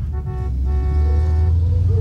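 A van's horn honking twice: a short toot, then a longer one of about a second, over a steady low rumble.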